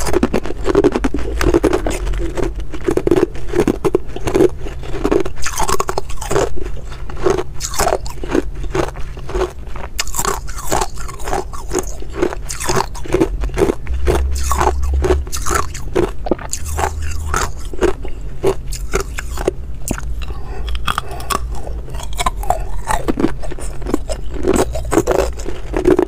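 Hard ice being bitten and chewed up close to the microphone: a dense, continuous run of sharp crunches, with some scraping of ice cubes in the bowl as more is picked out.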